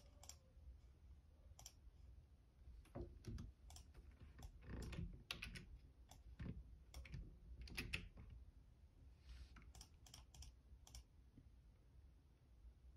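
Typing on a Logitech full-size membrane keyboard: soft, irregular key clicks, coming in quicker runs a few seconds in and again around eight seconds, thinning out towards the end.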